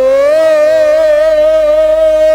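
A male Baul folk singer holding one long sung note through a microphone. The pitch slides up slightly at the start, then holds steady with a gentle waver.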